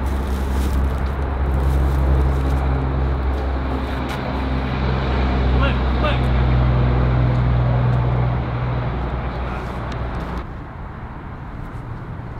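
Steady low drone of an engine running, like a motor vehicle or road traffic, swelling a little around the middle and cutting off abruptly about ten seconds in.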